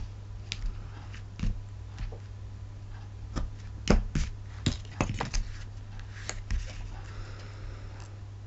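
Hands handling cardstock pieces, a roll of adhesive tape and small tools on a worktable: scattered clicks and light knocks, most of them and the loudest about four to five seconds in, with a soft rustle near the end. A steady low hum runs underneath.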